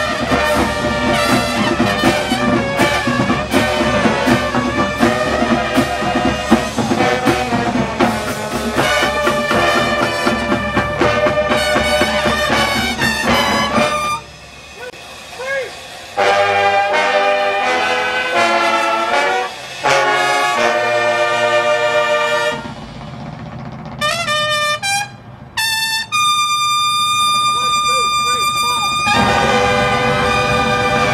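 Drum corps horn line and drums playing loud together for the first half. Then the music breaks into short brass chords with brief gaps, and a long held chord comes before the full ensemble picks up again near the end.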